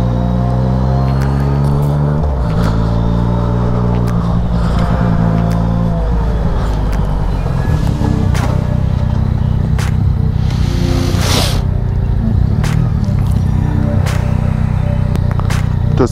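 Yamaha MT-09 Tracer's inline three-cylinder engine running at low revs as the motorcycle rolls slowly in a low gear, the revs dropping away about six seconds in, with some wind noise on the microphone.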